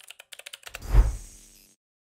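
Computer keyboard typing sound effect: a quick run of about a dozen keystroke clicks, followed about a second in by a deep low hit, the loudest sound, that fades away within about half a second.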